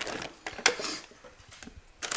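Clear plastic bag crinkling as it is handled, with a sharp crackle about two-thirds of a second in, then fading to a few faint clicks.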